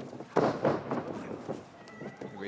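A sudden loud thud about a third of a second in, then about a second of rough scuffling noise, from wrestlers grappling on the ring mat.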